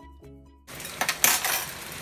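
Background music stops about two-thirds of a second in. Then food sizzles in a frying pan, with a quick burst of clattering knocks from a cooking utensil and pan.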